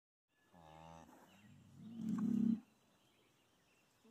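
Highland cattle lowing: a short, low call about half a second in, then a louder, higher call that swells for about a second and stops abruptly a little past halfway.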